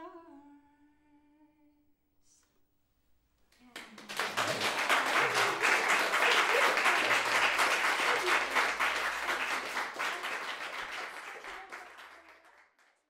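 The last held note of the music fades out. After a short pause an audience breaks into applause that swells quickly, holds, and thins out near the end.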